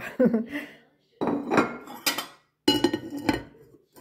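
A porcelain plate knocking and scraping against the inside walls of a ceramic crock as it is fitted down over packed sauerkraut, as a press under a weight. There are several sharp clinks, some with a brief ring.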